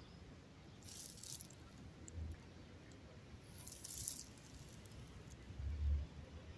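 Quiet outdoor ambience with two brief high rustling hisses and a few low thumps on the microphone, the loudest just before the end.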